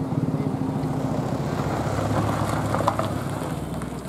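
A motor vehicle engine running close by, a low steady hum that fades toward the end.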